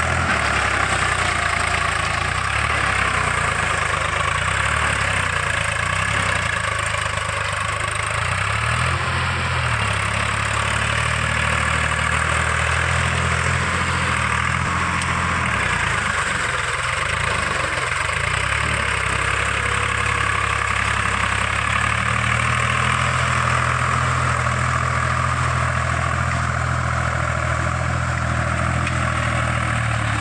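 Swaraj tractor's diesel engine running steadily under load as its steel cage wheels churn through flooded mud while puddling the field.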